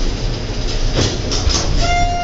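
Low, steady mechanical rumble of a Schindler traction elevator, with a couple of knocks about a second in and a steady tone starting near the end.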